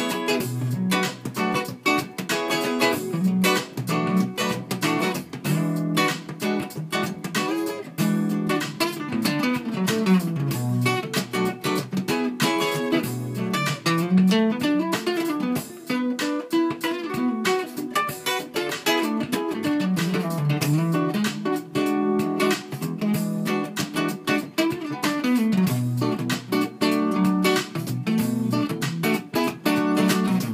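Heritage H575 hollowbody archtop electric guitar played through a chorus pedal, a T-Rex delay and a modified Mesa Boogie Triple Rectifier amp into a 2x12 cabinet, with a jazz tone. It plays a continuous improvised groove in B minor, a busy stream of picked single-note lines and chords.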